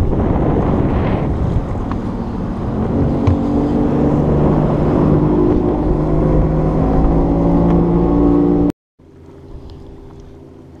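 Small boat's motor running at speed, with a dense rush of wind and water over it; the engine note rises slightly about three seconds in. Near the end the sound cuts off abruptly and gives way to a much quieter, low steady hum.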